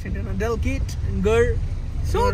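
Steady low rumble of a car heard from inside the cabin, with a man's voice over it in short snatches.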